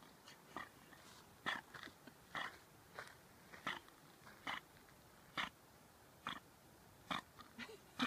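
A swimming dog breathing hard, short puffs of breath about once a second as it paddles toward shore.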